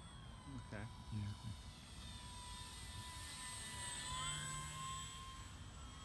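Electric motor and propeller of an E-flite PT-17 radio-controlled biplane flying past, a thin steady whine that grows louder as it approaches. About four seconds in, the whine rises in pitch as the throttle goes up.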